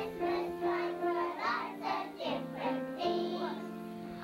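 A group of kindergarten children singing a song together, note by note, ending on a longer held note near the end.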